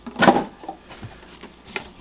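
Handling noise as boxed toys are moved about: a brief rustle of cardboard packaging just after the start, then a few light taps and clicks.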